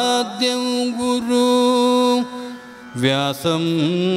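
A solo voice singing a slow Carnatic-style devotional chant, holding long steady notes. It breaks off briefly a little past the middle, then comes back with ornamented glides in pitch near the end.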